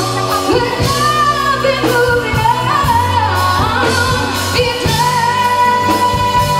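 A woman singing live into a microphone, backed by a band with keyboard and drums; her melody glides between notes and settles into a long held note near the end.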